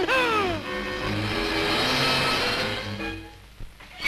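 Harsh rushing, mechanical noise of a paper shredding machine jamming on a metal bulldog clip and breaking down, about three seconds long and fading away near the end, over music.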